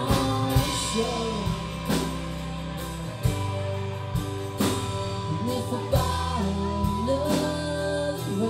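Live country band playing: acoustic and electric guitars, keyboard and drum kit, with singing and a steady beat.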